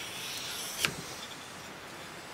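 Steel hook-knife blade swept along 1200-grit sticky-backed abrasive paper on a wooden block: a soft scraping stroke, then a sharp tap a little under a second in. The stroke hones the bevel to remove the coarser 800-grit scratches.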